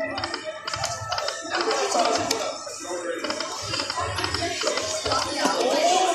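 Aristocrat Lightning Link 'High Stakes' poker machine playing its electronic music and reel-spin sounds as the reels turn, with voices talking over it.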